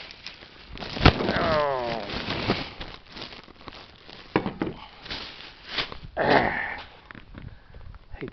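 Plastic packaging bags rustling and crinkling as they are handled, with scattered knocks and clicks. About a second in, a sharp knock is followed by a short falling, whine-like tone.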